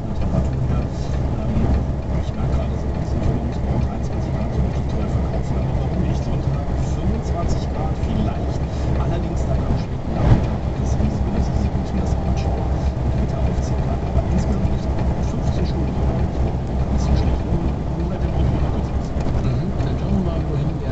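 Steady in-cab road and engine noise of a vehicle driving at motorway speed, with a single short knock about ten seconds in.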